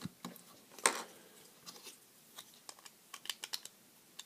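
Plastic Lego pieces clicking and tapping as they are handled: one sharper click about a second in, then a run of light clicks.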